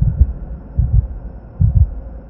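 Heartbeat sound effect on an outro: deep double thumps, three pairs spaced a little under a second apart.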